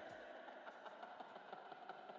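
Near silence: a faint steady hiss, with faint traces of the music that has just faded out.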